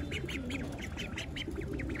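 Ducklings peeping: a rapid run of short, high-pitched calls, several a second.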